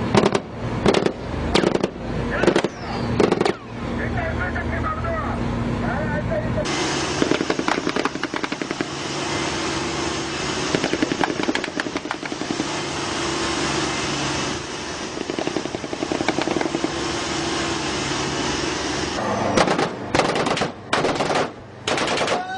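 Bursts of automatic gunfire: clusters of sharp shots in the first few seconds and again near the end, with a long dense rattle of fire and engine noise in between. Voices are heard among the shots.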